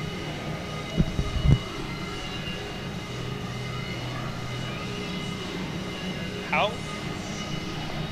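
Indistinct background voices over a steady hum, with two thumps about a second in and a short rising squeak near the end.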